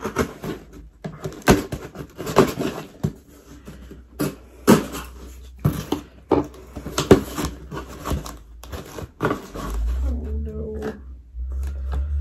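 Packing tape being ripped and a cardboard box pulled open by hand: a run of sharp crackling rips and scrapes, with a low rumble near the end as the contents are lifted out.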